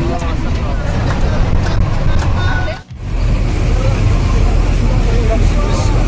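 Passengers' voices and chatter inside a moving bus over a steady low road and engine rumble. The sound drops out briefly about halfway through, then the rumble comes back heavier.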